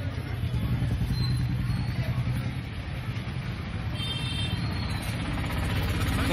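Street noise: a steady low rumble of road traffic with faint, indistinct crowd voices, and a brief high-pitched tone about four seconds in.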